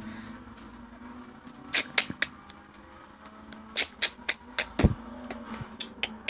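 Irregular clicks, taps and rustles of fingers moving on a fabric blanket right by the phone's microphone, with one heavier thump about five seconds in.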